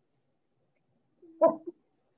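Near silence, then a single short voiced sound lasting about half a second, beginning a little over a second in.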